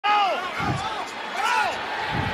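A quarterback shouting his pre-snap signals at the line: two loud calls, one near the start and one about a second and a half in. Low thuds come between them.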